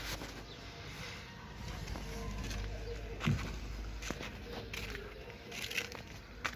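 Low wind rumble on the microphone with faint footsteps on a concrete rooftop, and a short low vocal sound about three seconds in.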